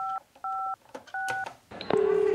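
Three touch-tone keypad beeps from an Abrio push-button landline telephone as 1-1-2, the emergency number, is dialed. The first two beeps are identical and the third is a slightly higher pair of tones. Near the end there is a click and a steady line tone starts.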